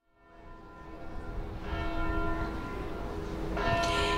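Church bells ringing, fading in from silence, over a low rumble.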